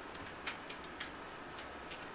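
A string of faint, light, irregular clicks, about eight or nine over two seconds, over low room hiss.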